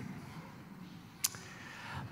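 Quiet pause with faint room tone, broken by one short, sharp click a little over a second in.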